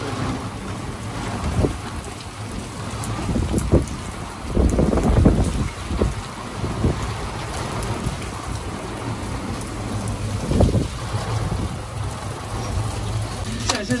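Rain falling in a windy thunderstorm, a steady rushing hiss with low rumbles swelling about four and a half seconds in and again near eleven seconds.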